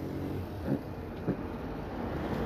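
Street background noise: a low, steady hum of road traffic, with two brief faint sounds about a second apart.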